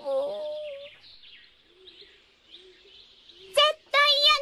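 Faint birds chirping as a background effect in a pause between lines of dialogue, after a voice trails off at the start and before another voice begins near the end.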